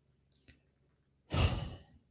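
A person's breathy sigh close to a microphone, one exhale of about half a second starting about a second and a half in. A faint click comes before it.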